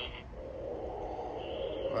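Electronic Halloween sound box inside a monster mask playing a rough, growling monster sound effect through its small speaker.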